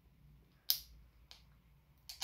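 Two short clicks from fingers working at the aluminium pull tab of an energy drink can, the first louder, about half a second apart; the tab has not yet broken the seal.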